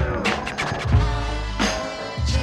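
Instrumental hip hop beat with heavy bass kick drums and sharp snare hits, with turntable scratching cut in over it.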